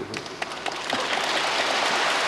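A large audience breaking into applause: a few scattered claps that swell within about a second into steady, dense clapping.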